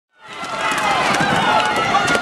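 A crowd of people shouting over one another with scuffling and scattered sharp knocks, the noise of riot police charging protesters with batons. It fades in over the first half-second.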